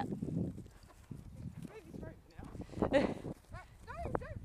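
Horse trotting on grass close by, its hooves thudding softly on the turf, with a loud breathy blow about three seconds in.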